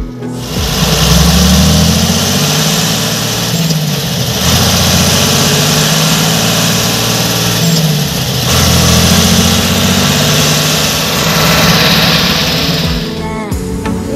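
John Deere 3050 tractor's six-cylinder diesel engine under way, heard loud from inside the cab; the revs climb, dip briefly about four seconds in and again past eight seconds, then climb again each time.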